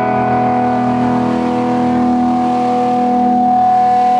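Electric guitar through an amplifier holding one sustained chord. The chord rings steadily and swells slightly near the end.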